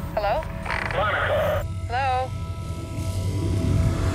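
Film score and sci-fi sound design: a low rumbling drone that swells towards the end, under thin steady tones, with three short warbling voice-like sounds in the first half.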